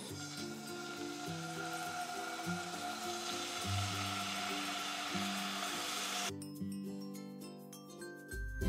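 Marinated chicken breast skewers sizzling in hot oil in a frying pan, under soft background music. The sizzling cuts off suddenly about six seconds in, leaving only the music.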